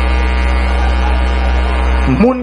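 Steady electrical hum with a buzzing edge, unchanging throughout.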